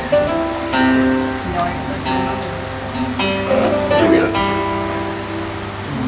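Archtop acoustic guitar strummed, with a handful of chords struck and each left to ring before the next. A voice briefly cuts in about midway.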